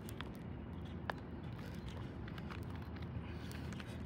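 Steady low outdoor background hum with a few faint clicks as a phone battery is handled and pressed onto a phone's back.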